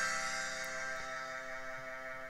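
Computer playback of a notated score through sampled instruments: the final rolled, fortissimo piano chord, with a held cello note and a cymbal, ringing and slowly dying away.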